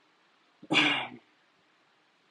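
A single short cough, about half a second long, a little way in.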